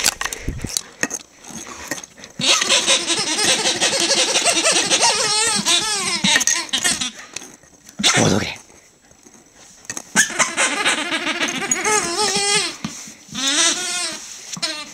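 Rubber squeaky football toy squeaking over and over as a greyhound chews it: two long runs of wavering squeals, with a short loud squeak and a lull around the middle.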